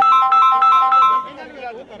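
A mobile phone ringtone: a short electronic melody of clear, quick descending notes, repeated for just over a second before it breaks off, with voices underneath.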